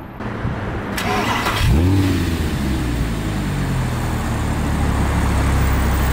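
Audi R8 V10 cold start: the starter cranks for about a second, the V10 catches just under two seconds in with a rev flare that rises and falls, then settles into a steady fast idle.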